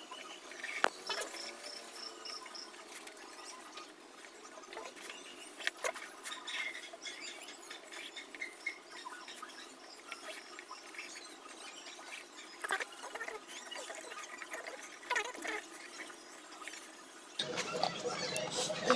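Quiet handling sounds of football boots being laced: laces sliding through the eyelets, soft rustles and occasional light clicks. A short run of high, rapid chirps sounds about a second in, and a louder, fuller sound starts just before the end.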